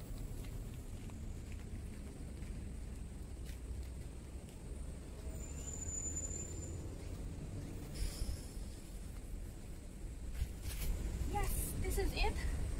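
Quiet outdoor background with a steady low rumble, a short high thin tone about halfway, and a person's voice briefly near the end.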